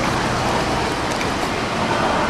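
Steady rushing splash of water from a swimmer kicking and stroking through a pool.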